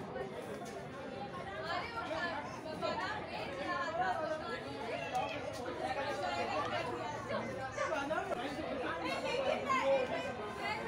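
Chatter of several people talking at once, with no single clear voice.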